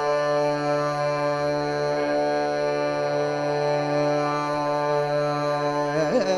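Carnatic vocal and violin holding one long steady note together over a drone, the pitch barely moving. Just at the end the melody starts to bend again.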